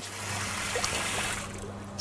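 Water running through a trough ball-cock float valve, a steady hiss that eases slightly near the end.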